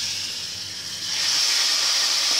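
Sugar syrup being poured into hot roasted semolina and ghee in a kadhai, hissing loudly with steam as it hits the pan. The hiss eases a little about half a second in and swells again after the first second.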